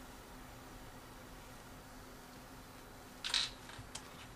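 Faint, steady room hum, with a short rustle of a cloth being rubbed over the iPod touch's wet screen protector about three seconds in and a small click just before the end.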